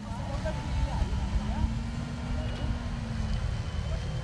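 Farm tractor engine running steadily under load as it pulls a disc harrow through maize stubble, a low drone with a steady tone that fades out about three seconds in.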